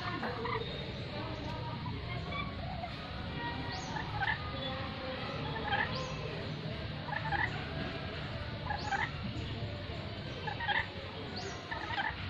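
A caged lory giving short, repeated calls, one about every second and a half from about four seconds in, over a steady low background hum.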